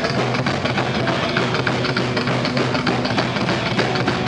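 Psychobilly band playing live: a coffin-shaped upright bass, electric guitar and drum kit in a fast, steady rhythm, loud and continuous. An instrumental stretch without singing.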